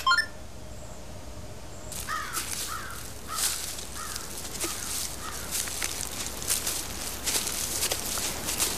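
A few short electronic computer beeps, then woodland ambience: a bird calling over and over in short falling chirps, with the crackle of feet and brush as several people walk through forest undergrowth.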